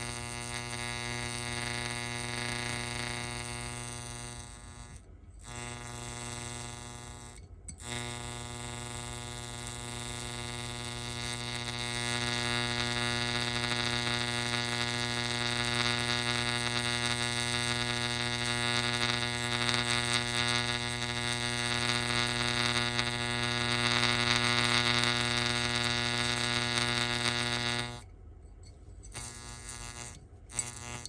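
Electric arc buzzing and sizzling at an electrode tip held at the surface of water, a steady electrical buzz with a hiss on top. It cuts out briefly twice, about five and seven and a half seconds in, grows louder and harsher from about twelve seconds, and drops away near the end.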